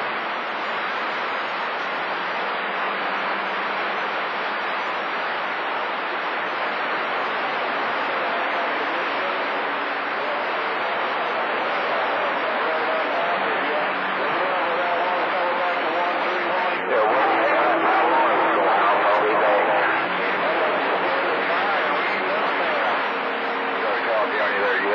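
CB radio receiver on channel 28 giving steady static hiss, with faint, garbled voices of distant skip stations coming through the noise. The signal gets louder about two-thirds of the way through.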